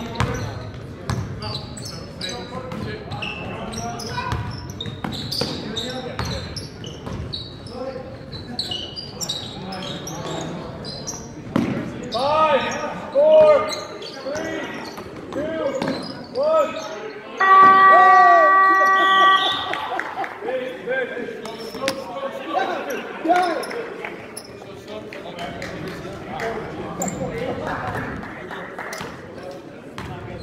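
Basketball being dribbled on a hardwood gym floor, with sneakers squeaking in short chirps as players cut and stop, all echoing in a large hall. About seventeen seconds in, a loud steady horn sounds for about two seconds.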